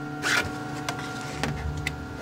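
Computer-controlled engraving machine cutting a plate: a steady motor hum, with a short loud scraping burst near the start and a few sharp clicks after it.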